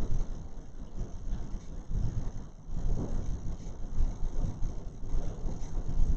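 Low, uneven rumble of background room noise with no speech.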